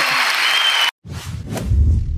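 Audience applause that cuts off abruptly just under a second in, followed after a short gap by a whooshing logo sound effect that swells into a deep boom and fades.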